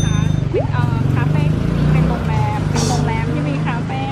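A motor vehicle engine idling close by, a steady low drone under women talking.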